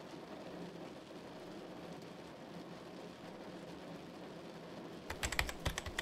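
Fast typing on a computer keyboard: a rapid run of clicks starting about five seconds in, over a faint steady background hiss.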